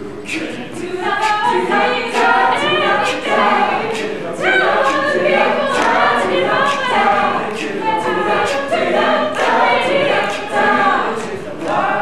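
Mixed-voice choir singing a cappella in harmony, with sharp clicks keeping a steady beat about twice a second.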